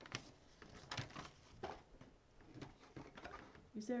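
Scattered soft clicks and rustles from handling a heart rate monitor watch and its instruction booklet, a few sharp ticks about a second apart; a woman starts speaking near the end.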